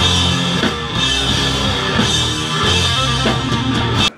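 Rock band playing live on a small pub stage during a soundcheck: drum kit, bass and electric guitar together, loud and dense.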